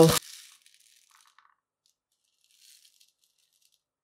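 Faint rattling of 4.5 mm metal BBs shifting inside a plastic bottle as it is handled and tipped out, in a few brief, quiet spells.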